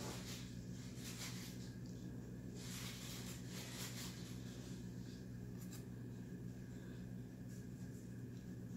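Faint soft rubbing and brushing of fingers pinching a raw pie-crust edge against a glass baking dish, a few short rustles, over a steady low hum.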